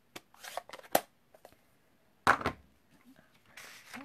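Paper and stamping supplies handled on a craft table: scattered clicks and paper rustles, a sharp tap about a second in and a heavier knock a little after two seconds.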